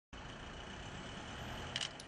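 Steady, quiet street background noise with traffic, and a brief click near the end.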